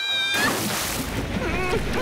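Cartoon sound track: a high, held cry breaks off about a third of a second in, cut by a sudden loud rushing whoosh. Then a wavering, high, voice-like whine rises and falls near the end.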